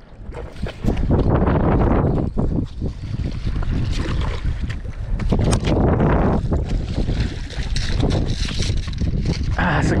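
Strong wind buffeting the microphone, a steady low rumble that builds about a second in, with a few sharp handling knocks.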